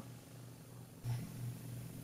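Quiet pause with a faint low hum, and a soft intake of breath from the speaker starting about a second in, just before she speaks again.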